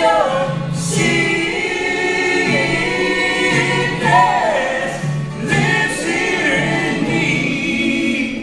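Three voices, two men and a woman, singing together in close harmony with a strummed acoustic guitar underneath, sung in a gospel-like style.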